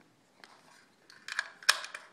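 Metallic clicks and clacks from a rifle and its ammunition being handled: a few faint ticks, then a quick cluster of sharp clacks about a second and a half in, the loudest near the end.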